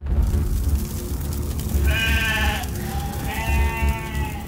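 Sheep bleating twice, long wavering calls about two and three and a half seconds in, over a heavy low rumble of fire.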